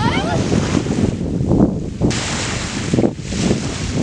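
Wind buffeting the camera microphone in a dense, low rumble, with a brief high-pitched shriek from a person right at the start.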